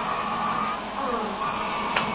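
Steady whirring hum of running kitchen machinery.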